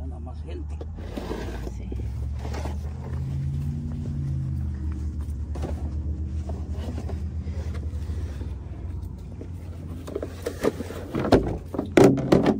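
A vehicle engine runs steadily nearby, its low hum swelling and rising in pitch about four seconds in, then settling. A few sharp knocks come near the end.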